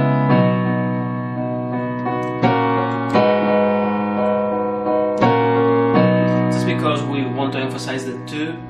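Piano playing slow sustained chords of a pop-worship song in B major. A new chord is struck about every two and a half seconds, and each time the bass is pressed again a moment later (a one-two pattern).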